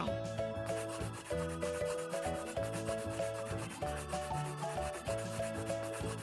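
Scratchy colouring sound effect: fast, even rubbing strokes, many a second, as the butterfly's head is painted in, over a soft background tune.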